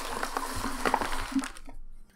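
Crinkling and rustling of clear plastic parts packaging being handled, with many small clicks, for about a second and a half before it dies away.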